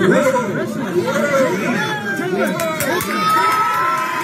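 A crowd of people talking and shouting over one another with raised voices during a scuffle, with one voice held long and high near the end.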